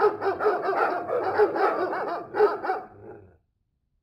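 Recorded dog barking, rapid high yaps at about four or five a second, played by the phone as the alert sound of a Ring motion notification; it stops abruptly a little over three seconds in.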